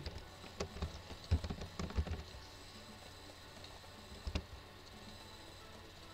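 Typing on a computer keyboard: a short run of soft key clicks in the first two seconds, then a single sharper click about four seconds in.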